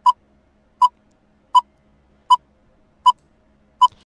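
Quiz countdown timer sound effect: short electronic beeps, evenly spaced about one every three-quarters of a second, six in all, marking the seconds as the answer time runs down.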